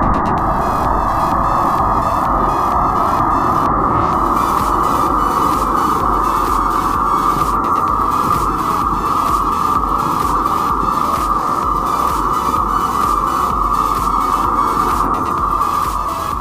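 Firework rocket burning with a steady rushing hiss that starts suddenly and holds even, over electronic music with a beat.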